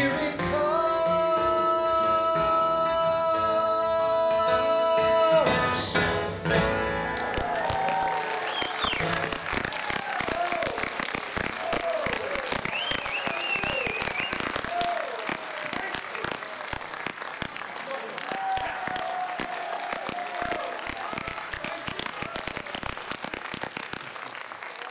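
An acoustic guitar's final chord ringing out for about five seconds and closed with a couple of strums, then an audience applauding with some cheers for the rest.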